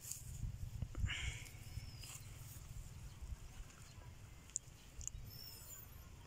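Faint open-air field ambience: a steady low wind rumble on the microphone, a brief scuffing noise about a second in, and a few short, high bird chirps, mostly in the second half.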